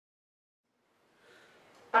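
Silence, then faint room noise from about a second in; right at the end two trumpets come in together with a sudden loud attack on sustained notes.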